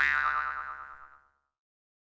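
Cartoon boing sound effect: a springy twang whose pitch wobbles as it dies away about a second in.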